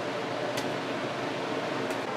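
Steady room noise, an even fan-like hiss, with two faint ticks, one about half a second in and one near the end.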